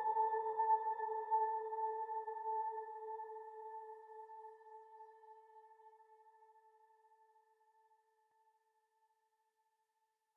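Closing note of an electronic dubstep track: a single tone that starts suddenly and slowly fades away over about eight seconds.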